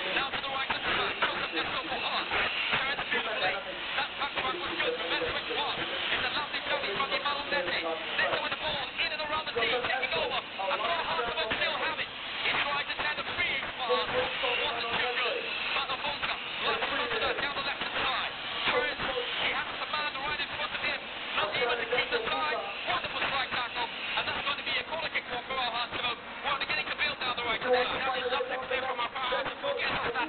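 Stadium crowd noise at a football match: many voices talking and chanting together, running on without a break.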